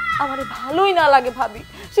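A drawn-out, meow-like wail that rises and then falls in pitch over about a second, over a held musical note.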